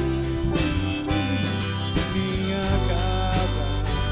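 An acoustic band plays an instrumental passage between vocal lines, with twelve-string acoustic guitar, grand piano and bass. A held lead melody slides between notes over steady bass notes.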